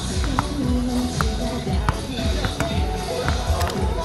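Music playing in a sports hall, with people talking and a basketball bouncing a few times.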